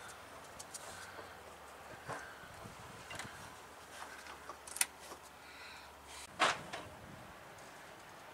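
Faint handling sounds with a few short, sharp clicks as the alligator clips of an oil pump's power lead are fastened to the truck's battery terminals; the loudest click comes about six and a half seconds in.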